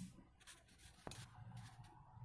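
Near silence in a small room, with faint brief rustles and a single click about a second in.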